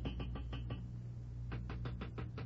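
Radio-drama sound effect of rapping on a radiator: a quick run of knocks, a short pause, then another quick run near the end, over the steady low hum of the old broadcast recording.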